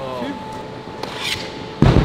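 A hockey stick striking balls on a concrete rink floor in a shot: one sharp, loud crack near the end, with a fainter scrape about half a second before.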